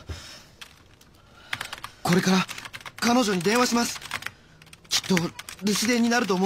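Computer keyboard typing: quick irregular key clicks, mostly in the first two seconds, with a person's voice speaking short phrases in the second half.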